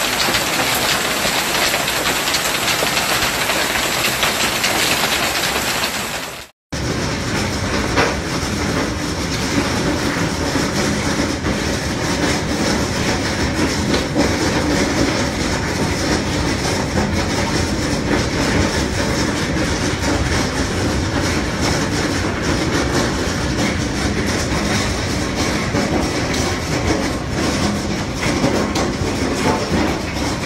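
Heavy hail pelting a swimming pool and the patio around it: a dense, steady roar of impacts and splashing. It cuts off abruptly about six and a half seconds in, then resumes with a deeper, fuller roar.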